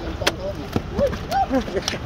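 A few sharp knocks as a landed catfish drops onto river stones and slaps against them, the loudest about a quarter second in. Faint voices and a steady low wind rumble run underneath.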